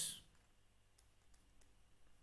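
Near silence with a few faint clicks: a stylus tapping on a writing tablet as a word is handwritten.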